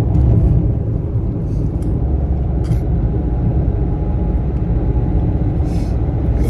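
Steady low rumble of a moving car heard from inside the cabin: engine and tyre road noise, with a few brief soft clicks about two seconds in.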